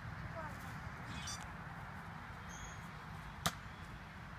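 A single sharp snap of a toy blaster shot about three and a half seconds in, over a steady low rumble of wind on the microphone.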